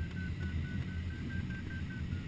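Sailplane variometer beeping, about four short beeps a second with a slightly wavering pitch, the interrupted tone that signals the glider is climbing. Under it runs a low, steady rumble of airflow around the cockpit.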